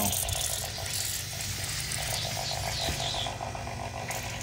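AC 115 V high-pressure diaphragm water pump running with a steady, rapidly pulsing hum as it pumps water into a steam boiler that is under pressure.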